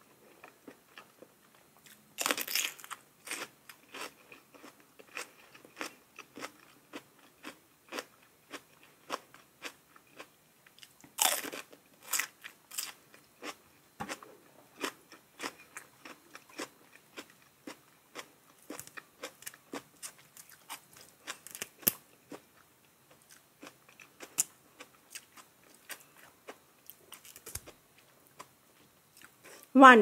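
Close-miked crunchy chewing of raw cucumber and vegetables. Two loud crisp bites land about two and eleven seconds in, and many small crunching chews follow all through.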